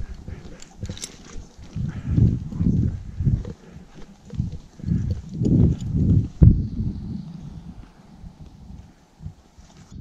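Horse hooves stepping through deep snow at a walk, a run of short low steps a fraction of a second apart, heard from the saddle. The steps are loudest in the first two-thirds, with a sharp click about six and a half seconds in, and grow quieter near the end.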